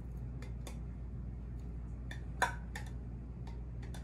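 A few light clicks and taps of a utensil against a bowl as grated carrots are scraped out into a soup pot, the loudest about two and a half seconds in. A steady low hum runs underneath.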